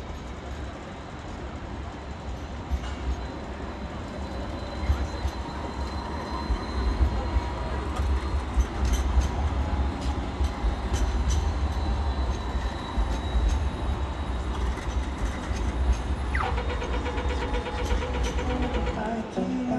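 Sydney light-rail trams (Alstom Citadis) passing slowly on street track: a steady low rumble with a faint electric whine and scattered wheel clicks, loudest as a tram passes close midway. Near the end, an Australian pedestrian-crossing signal gives a falling chirp followed by rapid ticking.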